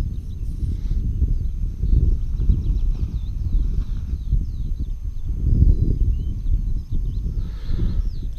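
Wind buffeting the microphone on an open hilltop: a heavy low rumble that rises and falls in gusts.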